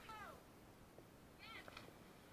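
Faint high-pitched human cries: one falling in pitch at the start and a short rising-and-falling squeal about a second and a half in, heard over near silence.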